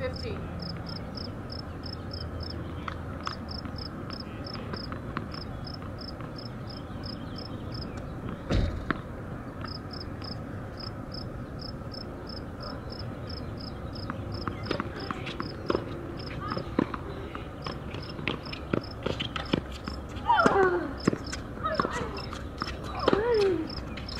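Outdoor background with an insect chirping steadily, about four short high chirps a second in runs broken by pauses. There is a single thump partway through, and near the end a few sharp knocks and short voice sounds.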